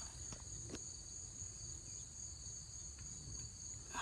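Faint, steady high-pitched insect chorus, crickets trilling without a break, with a couple of small clicks in the first second.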